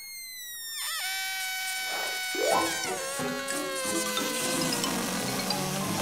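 Cartoon deflation sound effect: a whistling, whining tone like air let out of a balloon, held briefly and then sliding down in pitch over several seconds, with lower stepped descending notes joining about halfway.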